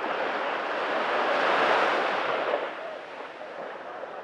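A small sea wave washing up the sand at the water's edge, its hiss swelling to a peak about halfway through and fading out.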